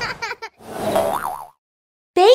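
Cartoon sound effects for an animated logo intro: a few quick clicks, then a swishing noise with a wobbling pitch that rises and falls twice and stops about one and a half seconds in.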